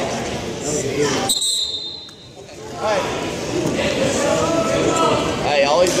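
Indistinct voices of spectators and coaches echoing in a gymnasium, with a brief high steady tone about a second and a half in, followed by a short lull before the voices pick up again.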